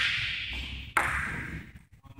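Two loud knocks about a second apart, each trailing off in about a second of echo in a large hall.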